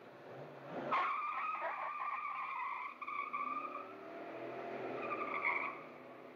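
Car tyres squealing as a car pulls away hard. The squeal starts suddenly about a second in and wavers until near the end, with the engine revving up beneath it in the second half.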